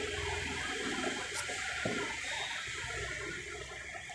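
Paper rustling as the pages of a textbook are turned over, with one short knock about two seconds in.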